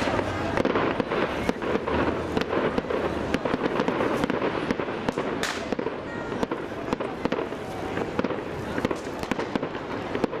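A rapid, unbroken barrage of explosions from fireworks and the Easter dynamite blasts, with many overlapping bangs and cracks every second.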